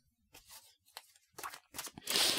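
Faint handling of a deck of tarot cards: a few soft clicks and rustles of card stock, with a small cluster of them in the last half-second or so.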